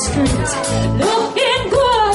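Live pop-rock band playing amplified music with drums, bass and guitar; a woman's singing voice comes in about a second in.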